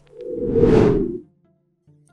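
Whoosh sound effect for a title transition, swelling over about half a second and fading out by just after a second in.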